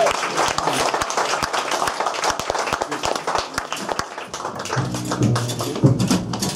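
Audience applause, many hands clapping, as a bluegrass number ends. About five seconds in, stringed instruments start sounding notes over the last of the clapping.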